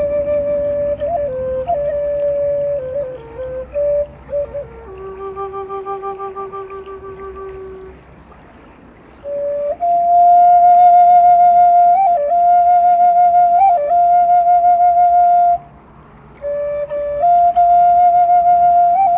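Solo Native American flute playing a slow melody of long held notes decorated with quick grace-note flicks, breaking off briefly for breath about eight seconds and sixteen seconds in.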